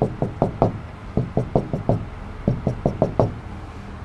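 Pen tapping on an interactive whiteboard screen while drawing short dashed lines: three quick runs of about five sharp taps each.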